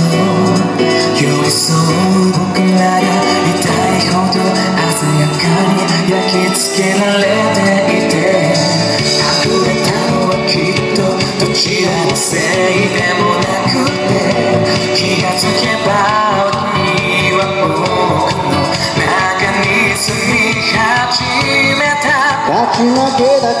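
Two male singers singing a pop cover into handheld microphones over amplified accompaniment. The accompaniment holds long low notes at first and turns to a busier, rhythmic beat about nine seconds in.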